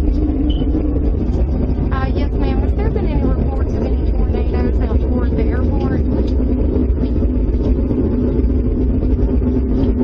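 A steady low rumble, with muffled, indistinct voices from about two to six seconds in.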